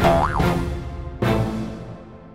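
Cartoon soundtrack music with two heavy hits about a second apart, and a quick comic 'boing' effect that slides up and back down in pitch just after the start. The music fades toward the end.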